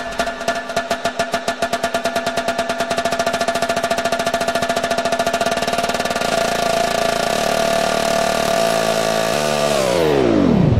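Electronic dance music build-up in a hard-techno DJ mix: the bass drops away while a rapid repeated hit speeds up into a buzz under held synth tones. Near the end everything sweeps sharply downward in pitch into the drop.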